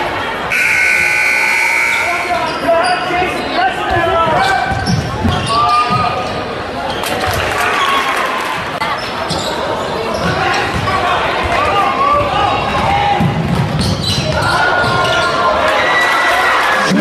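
Live basketball game in a large gym: a basketball bouncing on the hardwood floor, players and spectators shouting and talking, and a steady high whistle-like tone from about half a second in that lasts over a second.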